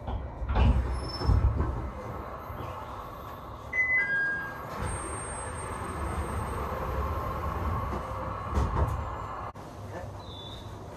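E721-series electric train standing at a station platform, heard from inside the car: a steady hum from the train, broken by several dull thumps early on and again near the end. About four seconds in there is a short two-note electronic tone that falls in pitch.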